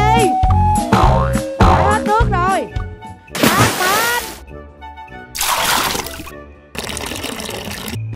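Playful background music with sliding, boing-like tones, then two loud splashes of water tossed from a plastic bucket, about three and a half and five and a half seconds in, followed by a softer steady rush.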